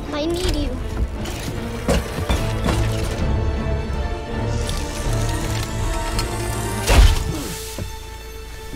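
Animated-series soundtrack: tense music with scattered knocks and crashes, then a loud blast with a deep boom about seven seconds in as a bomb goes off.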